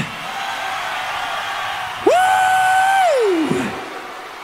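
Concert crowd cheering, and about halfway through a man's long shout into the microphone, held on one pitch and then sliding down at the end.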